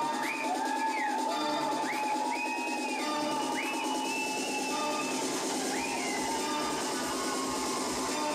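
Techno music with a synth phrase that rises and falls, repeating about every one and a half seconds over a steady high tone, with almost no bass at first. A low beat comes in near the end.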